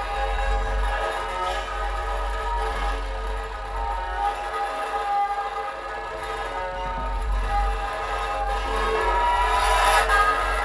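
Free-improvised electroacoustic music: laptop electronics hold a deep, continuous low drone under layered steady tones, while a banjo head is worked with a stick. It grows a little louder near the end.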